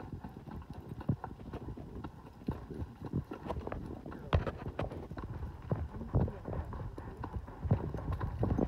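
Horse's hooves striking a dry dirt trail: an uneven clip-clop of about one or two strikes a second.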